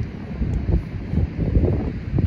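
Wind buffeting the microphone: a gusty low rumble that swells and dips unevenly.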